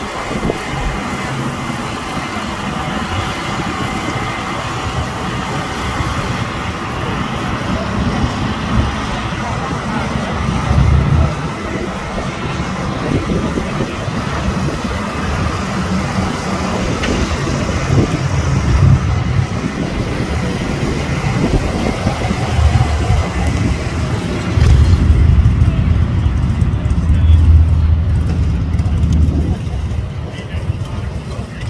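Motorcycle engines running as bikes, among them a batwing-faired touring motorcycle, ride slowly past one after another, swelling several times with the loudest and closest pass in the last few seconds. People talk in the background.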